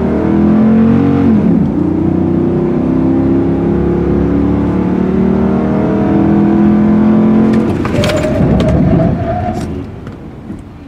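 A 6.4-litre HEMI V8 in a Ram 2500 pickup pulls hard under acceleration, heard from inside the cab. Its pitch dips about a second and a half in, then climbs steadily. Near the end the engine note drops away, leaving a higher rising whine with a few clicks as the sound fades.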